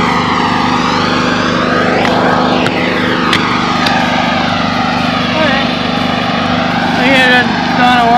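A steady engine drone passing by, its tone sweeping down and back up with a whooshing change about two to three seconds in.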